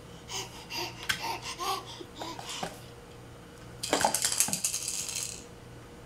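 A clear plastic bin being handled by a baby: small knocks and clicks, then a longer rattling clatter about four seconds in that lasts about a second and a half.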